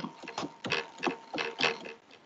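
Computer keyboard being typed: a quick, uneven run of about eight keystrokes that stops near the end.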